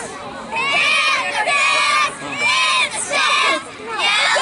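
Young girl cheerleaders shouting a cheer together in about four loud, high-pitched chanted phrases with short breaks between them.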